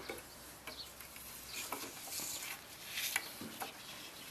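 Faint, scattered scrapes, rustles and small knocks of handling as a gopher snake is grabbed and lifted out of a plastic bucket, struggling, with camera handling noise.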